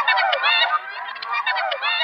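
Drum and bass track in a filtered passage: a riff of repeated tones that each glide downward in pitch, with the bass and drums cut out.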